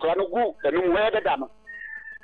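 A voice talking, then near the end a brief steady high-pitched tone, like a short whistle.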